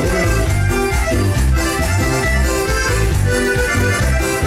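Live norteño-style band playing an instrumental passage: accordion carrying the melody over strummed guitar and a steady, rhythmic bass line.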